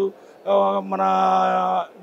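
A man's voice drawing out one long hesitation sound, a flat, steady 'uhhh' held for over a second between words.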